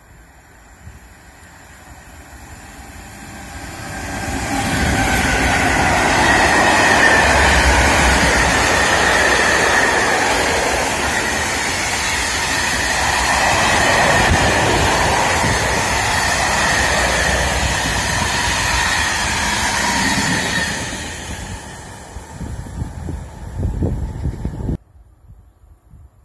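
Mixed freight train hauled by two BB 27000 electric locomotives in multiple passing through at speed. The rumble of the locomotives and the long rake of wagons builds over the first few seconds, stays loud for most of the passage, then fades with a few uneven wheel knocks as the last wagons go by, ending abruptly.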